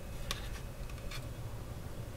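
A few faint ticks and light handling noise as a small diecast model car on a plastic display base is turned in the hands, over a low steady background hum.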